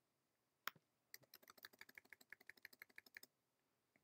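Faint computer keyboard keystrokes: a single key press, then a quick even run of about twenty taps, roughly ten a second, as one key is struck over and over while editing text.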